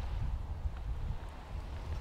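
Wind buffeting the microphone: a steady low rumble with no distinct event.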